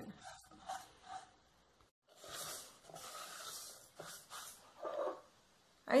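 Quiet rustling and scraping of a silicone spatula stirring dry toasted shredded coconut in an aluminium pan, the longest stretch about two seconds in, with a few short soft breath-like sounds in between.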